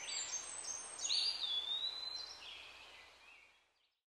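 Outdoor ambience of birds chirping over a steady background hiss, with one longer whistled call about a second in; it fades out just before the end.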